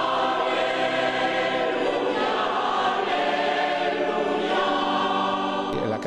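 Church congregation singing together, many voices holding long sustained notes in a hymn.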